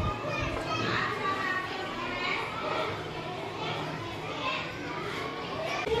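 Background chatter of many children's voices overlapping, with no single clear speaker.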